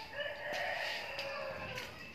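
A rooster crowing: one long call lasting about a second and a half.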